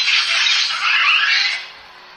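Motorized Iron Man replica helmet's faceplate opening: a loud mechanical whir lasting about a second and a half, stopping sharply near the end.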